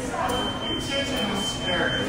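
A steady, high-pitched electronic tone starts about a third of a second in and holds, over faint restaurant chatter.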